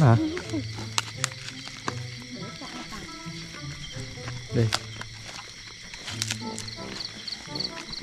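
Background music of sustained low notes that shift in pitch every second or so, over steady higher held tones, with a few sharp clicks.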